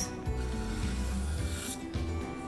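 Background music with a steady bass line, under the scratchy rubbing of a black felt-tip marker drawn across watercolor paper.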